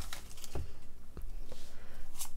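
Light handling of a torn-open foil booster-pack wrapper and a stack of trading cards: faint rustling with a few soft clicks.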